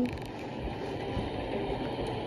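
Steady low noise, without distinct events, from a horror short film's soundtrack playing through a tablet speaker.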